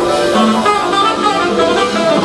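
Live smooth jazz band playing: saxophone and electric guitar over drums, bass and keyboards.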